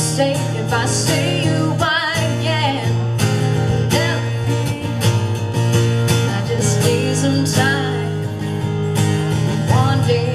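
Live acoustic guitar strummed through a song, with sung notes that waver in pitch around two seconds in and again near the end.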